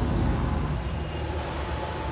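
Steady low engine and road rumble heard from inside a van's cabin as it drives in traffic.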